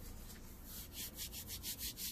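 Fingers raking and rubbing through a bowl of fine dry powder: a quick run of soft, hissing scrapes, several a second, starting a little before halfway and getting louder toward the end.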